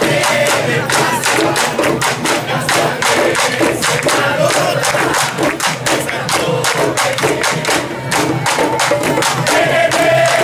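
Candombe drum line of tambores (the barrel-shaped piano, chico and repique drums) playing a dense, driving parade rhythm without a break.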